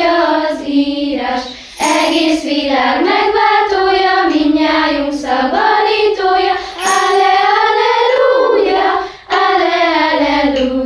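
A group of children singing a melody together, with short pauses for breath about two seconds in and again near the end.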